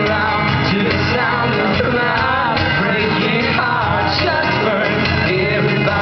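Live acoustic guitar strummed steadily with a man singing over it, a loud concert performance heard from the audience.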